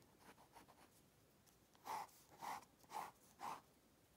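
Pen drawing on a lined spiral notepad: four quick strokes on the paper about half a second apart, starting about two seconds in, with faint room quiet before them.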